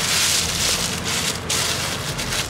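A thin plastic carrier bag crinkling and rustling as hands pull it open around a cardboard pizza box, in a few uneven surges.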